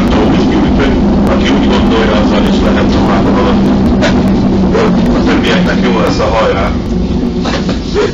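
Inside a moving tram: loud running noise with a steady low hum and indistinct voices. The hum fades and the noise eases near the end as the tram slows for its stop.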